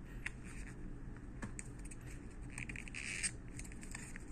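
Cardboard packaging being handled: a few light taps, then a short scratchy rustle about two and a half seconds in, as a coiled USB cable in its cardboard sleeve is lifted out of the phone box's cardboard compartment.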